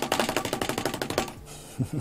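A paintbrush beaten rapidly against the easel leg to knock the paint thinner out of it: a quick run of knocks, about a dozen a second, for just over a second, then stopping.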